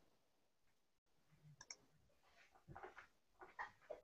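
Near silence: room tone, with a few faint clicks toward the end.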